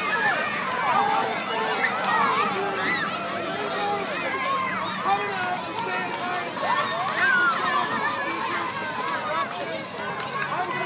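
A large group of young children chattering and calling out at once, many high voices overlapping in a continuous babble.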